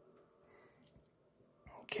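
Quiet room tone with a few faint, indistinct soft sounds, then a man starts speaking near the end.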